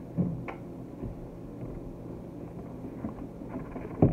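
Quiet handling noises as a record in its sleeve is lifted out of a cardboard box: a soft bump just after the start, a short click about half a second in, then faint rustling.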